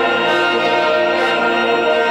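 Sacred choral music with brass holding a long, steady chord.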